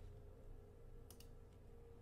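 Near silence with a faint steady hum and a couple of faint computer mouse clicks about a second in, as the video player is rewound.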